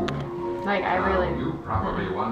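Indistinct voices with music playing underneath, with no clear words.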